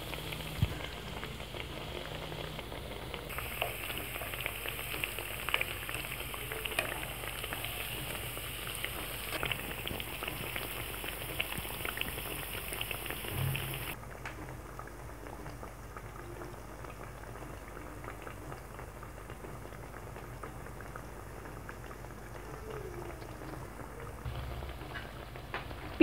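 Chira piyaju (flattened-rice and onion fritters) deep-frying in hot oil in a pan: a steady bubbling sizzle with small crackles, a little quieter from about halfway through.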